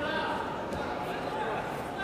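Indistinct voices echoing in a large hall, with a steady background hubbub of an arena.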